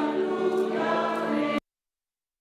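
A group of voices singing a hymn together in a church, holding steady notes, then cut off suddenly about a second and a half in.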